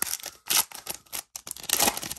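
Panini Chronicles football card pack's foil wrapper crinkling and tearing open in hand, in a run of sharp rustling bursts, loudest about half a second in and again near the end.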